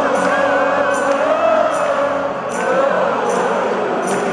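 Live band music in an arena: a wavering melody line with vibrato carried over light cymbal strokes that fall roughly every three-quarters of a second.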